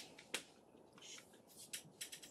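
A few faint, sharp clicks and taps in a quiet room, one louder click about a third of a second in, then several softer ones near the end.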